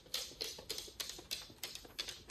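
A miniature schnauzer's claws clicking on a hard floor as it walks briskly away: a quick, uneven run of sharp clicks, about five a second.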